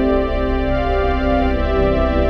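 Synthesizers (Roland Juno-106 and Casio CZ-101) holding organ-like sustained chords over a steady low drone, the chord shifting about a second in.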